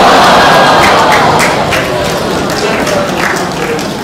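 Audience laughing and applauding in a large hall, at its loudest at the start and slowly dying down.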